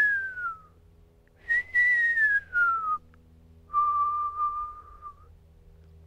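Eastern screech owl call, the whinny: clear whistled notes that slide down in pitch, then a longer note held on one pitch, used to call owls during an owl count.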